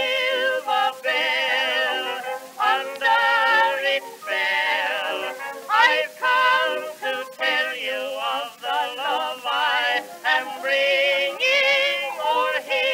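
Early acoustic recording, c.1912, of a man and a woman singing a sentimental duet refrain with a small orchestra. The voices carry a wide vibrato, and the sound is thin with no bass at all.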